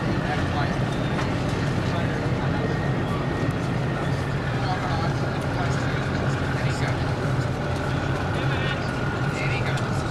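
Steady low drone of a boat engine running at a constant speed, under a continuous noisy hiss.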